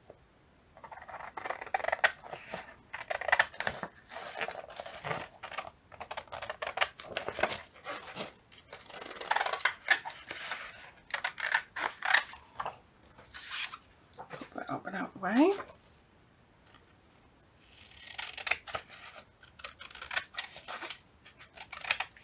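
Scissors cutting through printed paper in runs of snips, with the paper rustling as it is turned. The cutting pauses after about 15 seconds, where a short voiced sound rises in pitch, then resumes.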